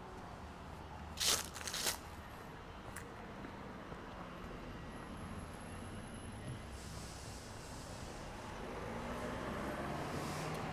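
Quiet residential street ambience with a low, steady traffic hum. A brief noisy burst about a second in, and a car's tyre and engine noise building near the end as it approaches.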